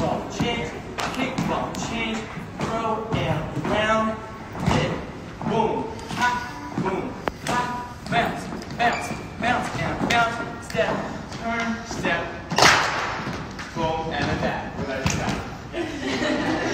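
A voice calling out in a large, echoing hall over repeated thuds of dancers' feet on a wooden dance floor, with one louder hit about three-quarters of the way through.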